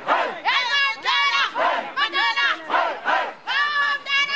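A crowd of mourners chanting and singing together, loud voices in unison in a rhythmic chant of about two shouted phrases a second.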